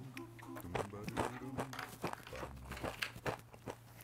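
Tortilla chips crunching and clicking as they are handled on a tabletop, a string of short sharp crackles, over quiet background music.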